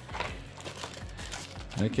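Clear plastic packaging bag crinkling softly as hands handle it and lift it out of a cardboard box.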